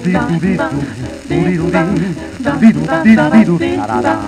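A dance-band fox-trot played from a 78 rpm shellac record, with the hiss and crackle of the disc's surface noise under the music.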